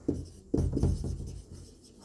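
Marker pen writing on a whiteboard: a run of short scraping strokes as letters are drawn, the sharpest about half a second in.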